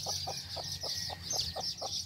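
A chicken clucking in a quick, even series of about five or six clucks a second, over a steady high-pitched background hum. A single falling bird chirp comes about halfway through.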